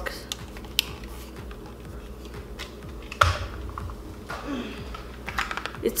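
Scattered light clicks and taps of a small plastic desk fan and its cardboard box being handled, with one louder knock about three seconds in.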